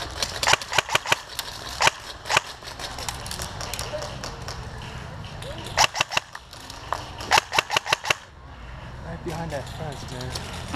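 Airsoft guns firing sharp pops in quick strings. There is a burst within the first second, single shots around two seconds in, and two more short bursts about six and seven and a half seconds in.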